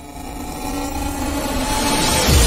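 Transition sound effect: a rumbling, whooshing swell of noise with a few faint held tones, growing steadily louder as it builds.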